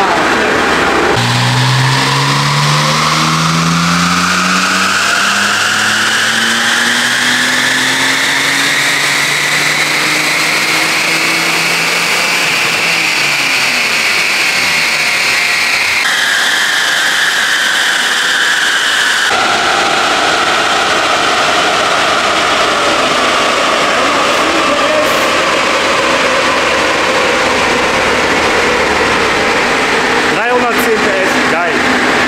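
BMW M54 straight-six fitted with a G-Power supercharger making a full-throttle pull on a rolling-road dyno. The engine note and a high supercharger whine rise steadily in pitch for over ten seconds, then the pitch falls away as the car runs down.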